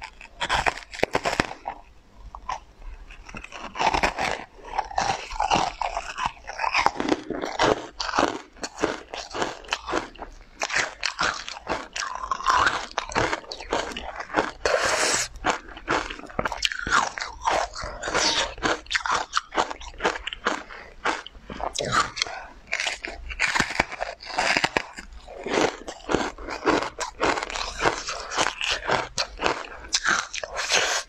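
Close-miked mouth sounds of biting into and chewing a matcha-powder-dusted dessert: a dense, irregular run of small clicks and crackles.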